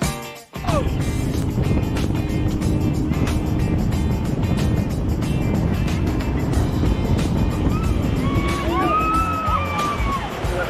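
Jet boat running fast over open water: a steady, loud rush of engine, wind and spray, with music mixed over it. Near the end come several high rising-and-falling cries from the passengers.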